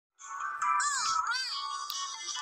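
Electronic music: a tinny synthesized melody with swooping, warbling notes that starts a moment in.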